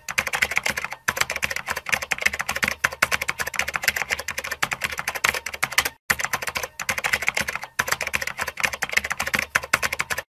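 Typing sound effect: a fast run of key clicks, with short pauses about a second in, at about six seconds and near eight seconds.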